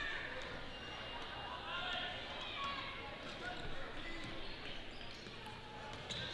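A basketball being dribbled on a hardwood gym floor, with a crowd's voices in the background.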